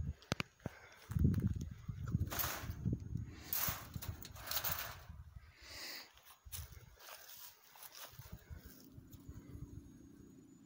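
Footsteps through dry grass and brush. Then a trapped bobcat hisses about four times, each hiss short and breathy, from inside a wire cage trap.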